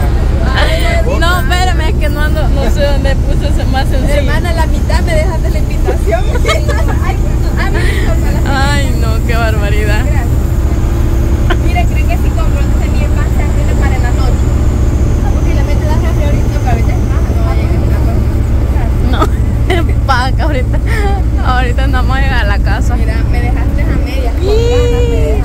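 Inside a moving bus: a steady low engine and road rumble, with passengers' voices talking over it.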